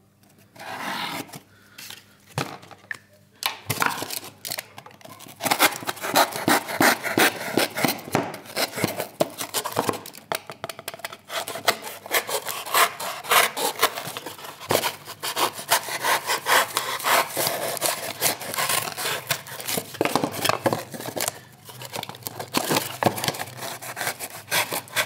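A knife sawing through a cardboard box in rapid back-and-forth strokes, sparse at first and steady from about four seconds in.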